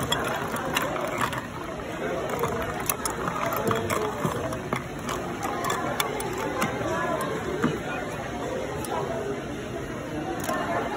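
Ice cubes clinking against a stemmed balloon glass as a bar spoon stirs them, a run of light, irregular clinks, over a steady background of people chattering.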